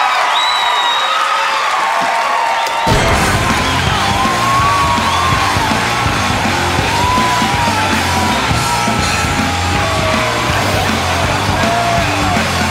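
Studio audience cheering and whooping. About three seconds in, loud dance music with a strong bass beat starts suddenly and plays on under the yells.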